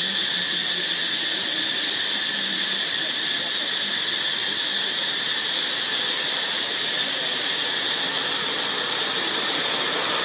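Steady high-pitched drone of insects in the forest: an even hiss with a constant tone on top.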